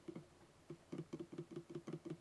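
Faint, quick taps of fingers on a computer keyboard, a few at first, then about five a second through the second half.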